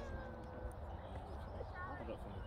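Faint, distant shouts and calls of players and spectators across a football pitch, one call held briefly early on and another rising near the end, over a steady low outdoor rumble.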